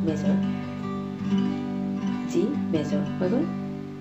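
Acoustic guitar sounding a G major chord, strummed and left ringing, dying away near the end.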